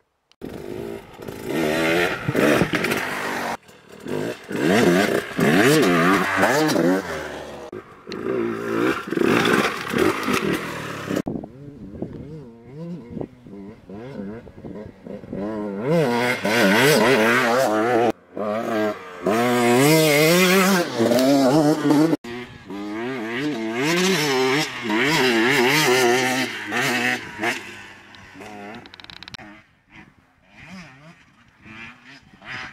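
Two-stroke single-cylinder engine of a KTM 125 XCW enduro bike revving up and easing off again and again as it is ridden off-road. It comes in several separate stretches that cut off suddenly, with a quieter, more distant passage in the middle.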